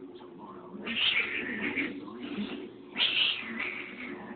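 A house cat yowling twice during a tussle with another cat: once about a second in, and again near the end.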